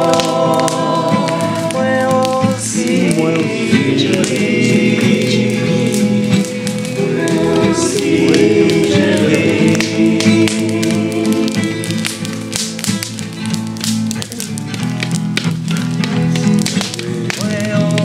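Several voices singing together in a group chorus over strummed acoustic guitar.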